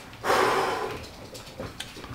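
A man blowing out a forceful breath through pursed lips: a breathy whoosh about a quarter second in that fades over about a second.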